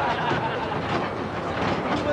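Underground man-riding train carrying miners through a coal-mine roadway, its carriages and wheels rattling steadily along the rails.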